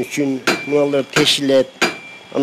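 A man talking steadily into a close microphone.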